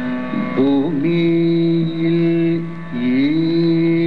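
Carnatic classical music in raga Manji: long held melodic notes with slides between them, over a steady drone.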